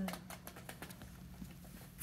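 A puppy's feet pattering on a foam floor mat as it runs after and grabs a small toy: a quick run of light ticks that thins out after about a second.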